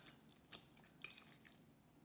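Mostly near silence, with a few faint clicks of forks touching a metal bowl as cooked pork is pulled apart, about half a second and a second in.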